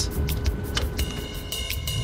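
Background music over the low, steady rumble of an airliner cabin. A thin, steady high tone comes in about halfway through.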